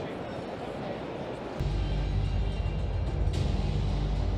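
Exhibition-hall crowd chatter, then about one and a half seconds in a loud, deep, bass-heavy music swell starts and holds steady.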